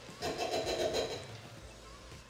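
Canned tomatoes sliding out of a tin into a stainless-steel pot of ragu: a soft, thick pour lasting about a second, then dying away.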